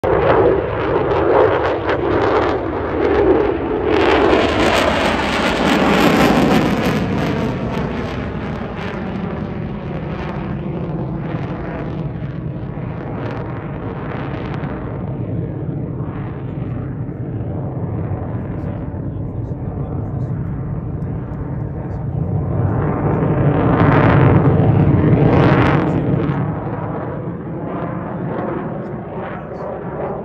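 F-16 fighter jet flying past overhead: loud jet noise that sweeps down in pitch as it passes about five seconds in, then settles to a steadier distant rumble and swells again a few seconds before the end.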